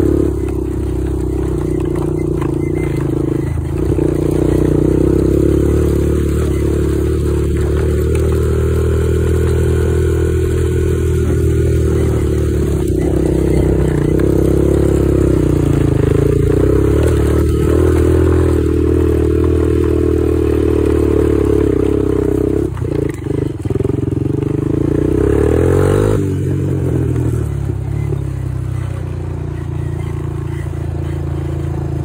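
Honda TRX250EX quad's single-cylinder four-stroke engine running under way as it is ridden, its pitch rising and falling with the throttle. Near the end it revs up briefly and then drops away.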